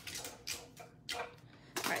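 A few short clicks and rustles, about half a second apart, of die-cutting plates, a metal die and cardstock being handled after a pass through a hand-cranked die-cutting machine.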